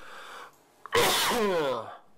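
A man coughs once, loudly, about a second in. The cough ends in a voiced sound that drops in pitch, and a faint breathy hiss comes before it.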